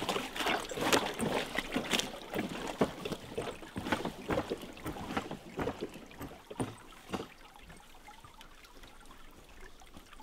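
Lake water lapping and sloshing close to the microphone, with irregular small splashes and knocks that thin out after about seven seconds to a faint water murmur.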